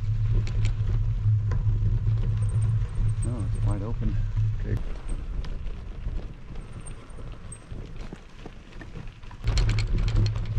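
Wind rushing over the microphone and the tyres of a loaded touring bike rolling on a dirt road, with small rattles and clicks. The low rush drops away about five seconds in.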